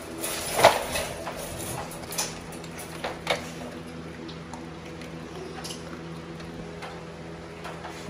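A few sharp metallic clinks and knocks from wire dog crates being rattled, the loudest about half a second in, over a steady low hum.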